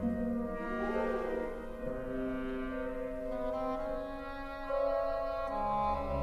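Slow orchestral film-score music: sustained chords for brass and strings, shifting every second or two and swelling a little about five seconds in.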